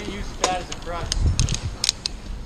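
Metal climbing hardware (carabiners and a rope friction device on the climber's line) clinking in a series of sharp taps, with low handling thumps near the middle.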